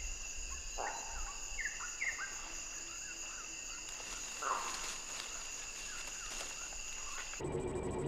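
Tropical forest ambience: a steady high-pitched drone of insects, with a few short chirps and calls over it in the first half. Shortly before the end the background changes to a lower, fuller hum.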